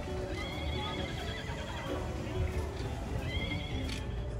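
Recorded horse whinny, heard twice (once early and once near the end), with hoof clip-clop over background music.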